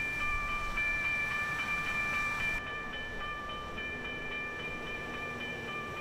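Water truck running and spraying water from its front spray bar onto the road, with a low engine rumble, the hiss of the spray, and a steady high whine of several pitches held throughout.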